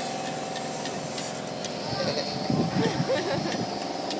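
A steady engine-like hum runs throughout, with faint voices about halfway through.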